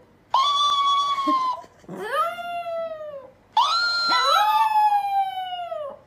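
A Chihuahua howling three times, each howl a long call that rises briefly and then slides slowly down in pitch.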